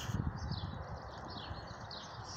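Songbirds chirping in short, repeated high phrases over a low background rumble.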